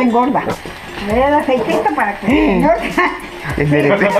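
A woman's animated voice with wide swoops in pitch, over background music.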